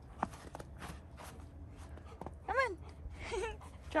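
Golden retriever whining: two short, high-pitched whines that rise and fall in pitch, about two and a half and three and a quarter seconds in.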